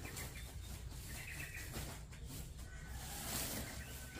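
Faint rustling of a woven plastic sack being handled and pulled over a rolled carpet, with a few faint high chirps over a low steady rumble.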